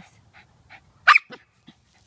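Cairn terrier letting out one sharp yip about a second in, followed by a couple of smaller sounds, while digging for a mole.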